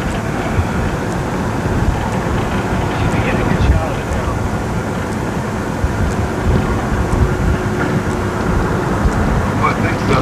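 Steady road and wind noise inside a car's cabin at highway speed, mostly a low tyre rumble.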